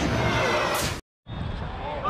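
An edited-in transition sound effect for a title card: a rushing noise that ends with a brief high swish about a second in and cuts off abruptly. After a short gap of dead silence, faint outdoor ambience from the football pitch comes in.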